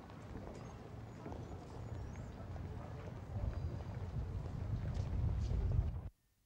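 Outdoor pedestrian-precinct ambience: footsteps on paving and faint voices over a low rumble that grows louder toward the end, then cuts off suddenly.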